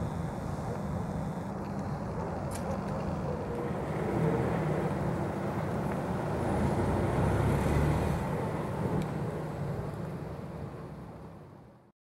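Distant city road traffic: a steady low hum of many vehicles, a little louder in the middle and fading out near the end.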